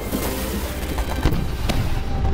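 Aerial fireworks bursting and crackling in a dense, continuous barrage, with two sharper bangs a little after a second in.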